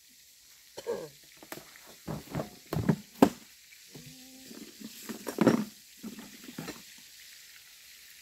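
Traíra frying in hot fat in a pan, a faint steady sizzle, with scattered knocks and clicks of handling on top. The sharpest click comes about three seconds in, and a short squeak about four seconds in.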